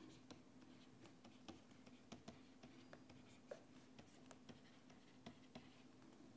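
Faint, irregular clicks and scratches of a stylus writing on a pen tablet, over a low steady hum.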